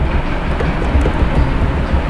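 A steady low rumble of background noise, with a few faint clicks from computer keyboard keys as text is deleted in the code editor.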